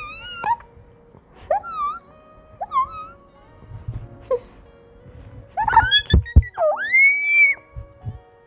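Bird-like squawks and chirps voiced for cartoon birds. There are about four short wavering calls, then a louder flurry with two thumps, ending in a long rising cry near the end, over quiet background music.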